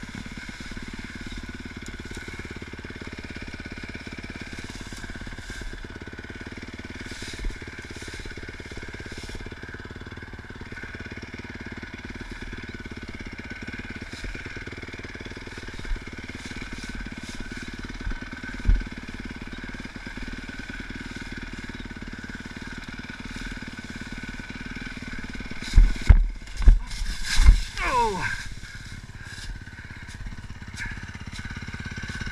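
Honda CRF450R four-stroke dirt bike engine running at a low, steady throttle over rough trail, with occasional knocks from the chassis. Near the end comes a burst of loud thuds and crashing as the bike goes down on its side, and a sound falls sharply in pitch.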